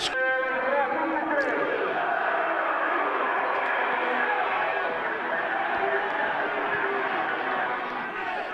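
Football stadium crowd cheering and chanting in celebration of a goal, a steady din of many voices.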